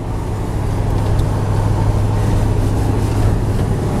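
1972 Chevrolet Chevelle SS driving at a steady speed, heard from inside the cabin: a steady engine hum with road noise.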